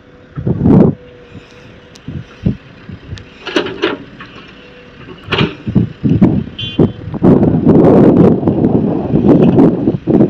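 Heavy earth-moving machinery running: an excavator and trucks working, with an uneven rumble that grows louder and denser in the last few seconds. A brief high beep sounds about two-thirds of the way through.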